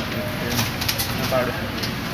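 Faint, indistinct voices over steady room noise, with a few sharp clicks between about half a second and a second in.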